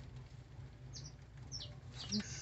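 Faint bird chirps: two short, high, falling chirps, one about a second in and one near the end, over a low background hum.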